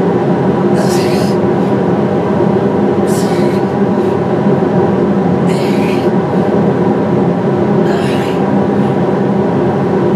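Steady drone of industrial fans played back as white noise from a recording. On top of it come four short hissing breaths, about every two and a half seconds, in time with the exercise.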